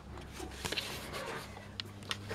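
Quiet room tone: a low steady hum with a faint hiss, and two soft clicks, about a second in and near the end.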